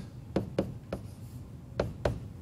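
Stylus writing on a tablet: four short sharp taps as the pen strokes land, the last, near the end, the loudest.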